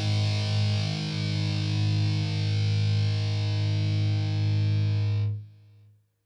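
Distorted electric guitar chord held and ringing out as the final note of a rock song, then cut off sharply a little after five seconds in.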